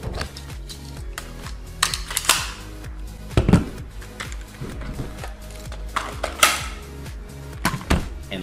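Clicks and knocks from a plastic prop pistol being handled as a magazine is inserted, with the sharpest strikes about three and a half and six and a half seconds in. Steady background music plays underneath.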